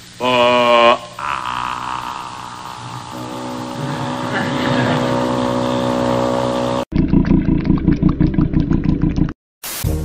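A man singing a short phrase that rises in pitch, then a long held note over band accompaniment that swells and cuts off suddenly about seven seconds in. A short stretch with a fast, even pulse follows.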